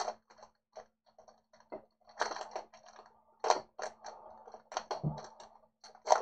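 A trading-card pack's wrapper being torn open by hand: faint, irregular crinkling and crackling in short clusters.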